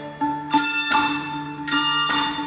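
A handbell ensemble playing: brass handbells struck in chords, with new chords about half a second in and again near the end, each ringing on between strikes.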